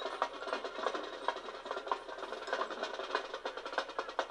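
Marching band playing on the field, carried by a fast, even run of sharp percussion strikes over pitched instruments. The sound is thin, with no bass.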